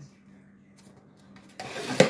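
A cardboard Pringles tube rubbed and scraped in the hands: faint handling, then a short, loud scrape in the last half-second.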